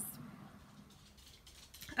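Quiet room tone, with a few faint clicks near the end.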